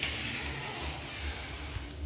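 A steady hiss that starts suddenly, with soft low thuds beneath it.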